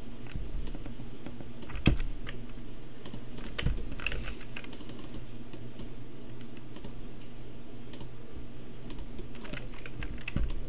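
Computer keyboard and mouse clicking irregularly as text is typed and placed, with two louder knocks about two seconds and nearly four seconds in, over a steady low hum.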